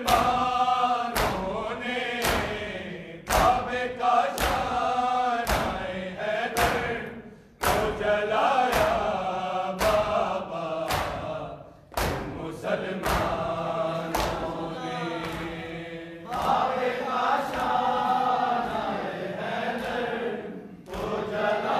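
A crowd of men chanting a noha together, with the slap of hands striking bare chests (matam) about once a second. The chant breaks off briefly between lines.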